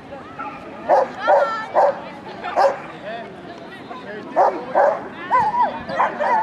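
A dog barking, about six loud, sharp barks spread unevenly over several seconds.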